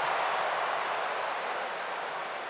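A large football stadium crowd reacting loudly to a shot that strikes the goal frame. The noise is a steady wash that eases slightly toward the end.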